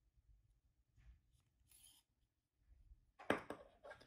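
Faint handling sounds of hand sewing: needle and thread drawn through satin ribbon, with a short louder rustle near the end.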